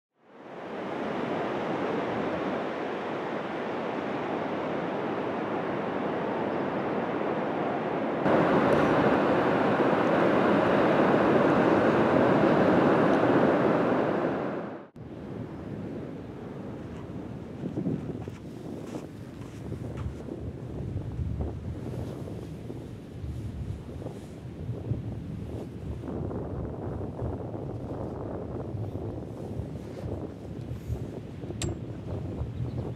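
Ocean surf washing in a steady rush, stepping up louder about eight seconds in and cutting off abruptly around fifteen seconds. After that comes a quieter stretch of surf with wind buffeting the microphone.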